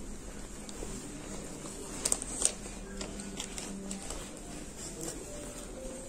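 Quiet indoor room tone with faint held low tones that change pitch now and then, and two sharp clicks about two seconds in.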